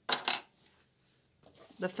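A brief double clatter of small hard plastic objects, the packaged thread spools being set down on a table.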